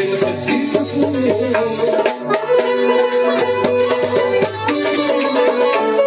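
Instrumental passage of Algerian chaabi music: a lute and two banjos playing a melody together in fast plucked strokes, with no singing.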